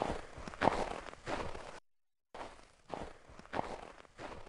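Soft, irregular scuffing sounds, like steps, in two runs separated by a brief silence about two seconds in.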